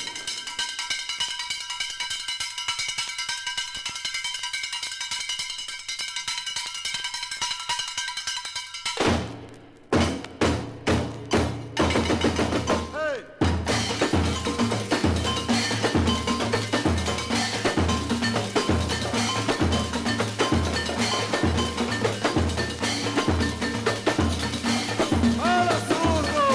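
Samba percussion from a 1962 Brazilian vinyl record. It opens with sustained ringing tones, breaks at about nine seconds into a few separate hits with rising and falling squeaks, then the full percussion section comes back in with a steady deep drum beat under dense percussion.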